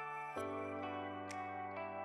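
Soft, calm new-age background music with held notes; a new chord comes in about half a second in.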